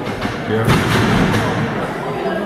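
A wrestler's strikes landing on an opponent in the ring corner: a sharp thud on the ring about two-thirds of a second in, then a quick run of further hits.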